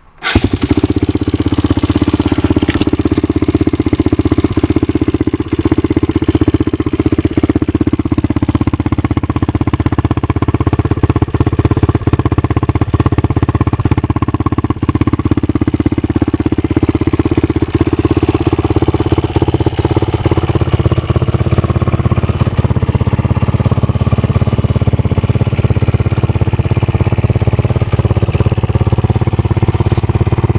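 1997 Honda TRX300EX quad's air-cooled single-cylinder four-stroke engine, fitted with a full aftermarket exhaust, starting at once and then running at a steady idle.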